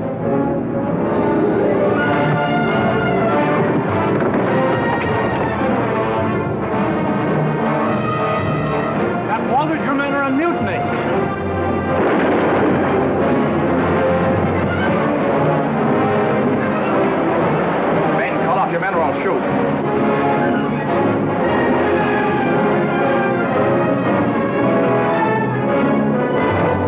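Orchestral film score with brass and timpani, playing loudly throughout.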